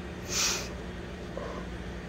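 A short breath or sniff, about half a second long, heard over a steady low hum.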